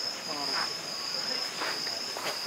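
Crickets trilling in one steady, high, continuous tone, with faint voices of people talking in the background.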